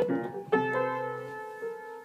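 Upright piano keys pressed by a toddler's hands: a cluster of notes at the start, then a louder jumble of notes about half a second in that rings on and slowly fades.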